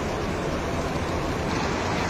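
Steady, even rushing background noise of a busy bus terminal, from coach engines and traffic, with no distinct events.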